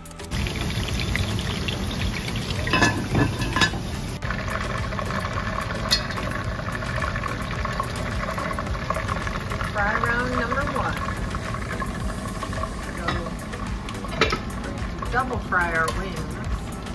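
Steady sizzling hiss of wing sauce cooking in a saucepan on a gas burner as it is stirred, with a few sharp clinks of the spoon against the pot. Brief voice-like sounds come about ten seconds in and again near the end.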